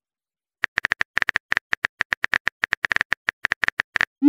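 Simulated phone-keyboard typing: a fast, uneven run of short clicks, all with the same bright pitch, starting a little over half a second in.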